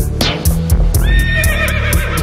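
Live band music with a steady low pulse and fast ticking percussion. About a second in, a horse's whinny sounds over it, quavering in pitch.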